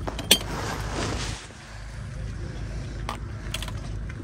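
China cups and plates clinking against each other as they are handled in a box, with one sharp clink about a third of a second in and a couple of lighter knocks about three seconds in, over a steady low rumble.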